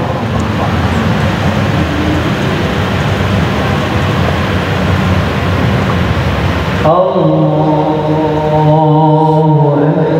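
A steady, loud rushing noise with no clear pitch fills about the first seven seconds. Then the imam's chanted Quran recitation starts abruptly, in long held notes that rise into the phrase.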